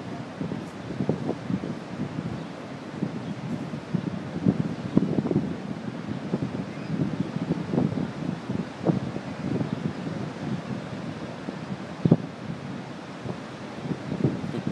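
Wind gusting across the microphone in uneven blasts over a steady rushing noise, with one sharper thump near the end.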